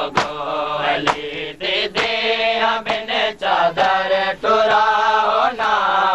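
A group of men chanting a noha refrain in chorus, with sharp chest-beating slaps (matam) keeping time about once a second.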